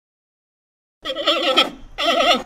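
A person's voice imitating a penguin call: after about a second of silence, one wavering, quavering call lasting just under a second, with the next call starting at the very end.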